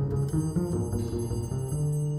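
Live quartet of piano, vibraphone, bass and drums playing a busy passage of quickly changing notes in a low-to-middle register, settling onto a held low note near the end.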